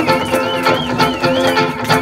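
Live band playing an instrumental passage between vocal lines: guitar and upright bass over steady drum strikes, with a high wavering melody line over the top.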